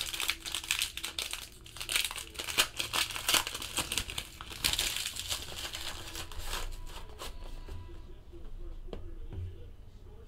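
Gold foil pack wrapper being crinkled and torn open by hand, a dense run of crackling with louder bursts, easing off about seven seconds in.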